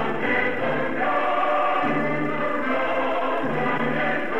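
A choir singing a Persian political anthem with instrumental accompaniment, in long held notes over a bass line that moves every second or so.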